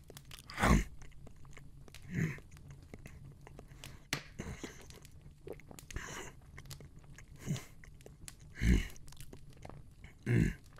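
Close, wet eating sounds of someone chewing and biting into meat: a string of separate bites and chews, loudest about a second in and near the end.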